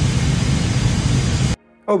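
A loud, steady rushing noise with a low rumble, like air or machinery. It cuts off abruptly about one and a half seconds in.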